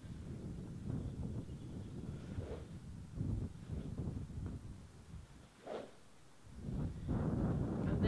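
Wind rumbling on the microphone, louder near the end. A short swish comes about two and a half seconds in and another near six seconds: a SuperSpeed Golf weighted training stick swung through the air as fast as possible.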